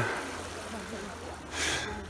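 A man breathing hard with the effort of push-ups, with one short, breathy exhale about one and a half seconds in.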